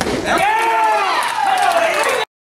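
Young girls' voices cheering in one long, drawn-out call whose pitch falls toward the end, over crowd chatter.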